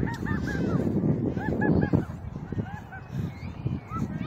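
Birds giving runs of short, repeated calls in several clusters, over a loud low rumble of wind on the microphone.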